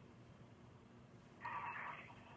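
Quiet studio room tone, then about a second and a half in a brief, faint, thin sound over a telephone line from the phone-in caller, just before his guess.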